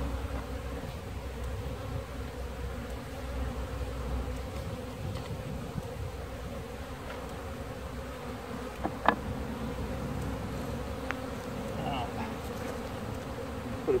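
Swarm of honeybees buzzing steadily around an open hive, a dense, even hum. A single sharp knock comes about nine seconds in.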